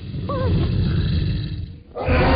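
Animated dinosaur roar, a deep, loud rumble lasting most of the two seconds and stopping just before the end. A short wavering high yelp cuts in about a third of a second in.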